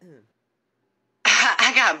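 A woman coughs and clears her throat, a rough burst a little over a second in that runs straight into speech, after a short near-silent gap. It comes as she complains of a burning sensation from Gatorade that went up her nose.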